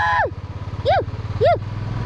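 Motorcycle engine running at low speed with a steady low pulse. Over it, a high held vocal whoop ends just after the start, and two short high whoops follow about one and one and a half seconds in.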